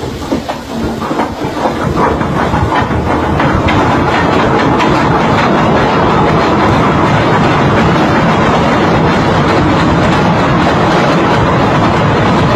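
Ship's anchor chain running out uncontrolled over the windlass gypsy after coming loose during anchoring. Separate clanks of the links come faster and faster and merge, about four seconds in, into one continuous loud rattle.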